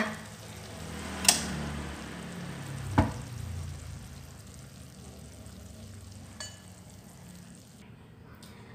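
Duck pieces in a reduced coconut-water braising sauce sizzling in a metal wok, the sound slowly dying down because the stove has just been turned off. Two sharp knocks come about one and three seconds in.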